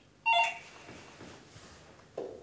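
Electronic apartment doorbell pressed once, sounding a brief electronic tone that steps down in pitch about a quarter second in, followed by quiet room tone.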